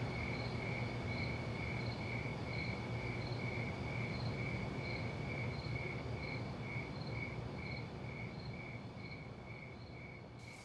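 Insects chirping in an even, steady pulse over a low hum of night ambience, fading out toward the end.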